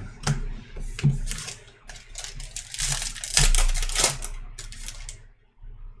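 Trading cards handled and flipped through by hand: a run of light clicks and slides as the cards tap and rub against each other, with a louder papery rustle about three to four seconds in.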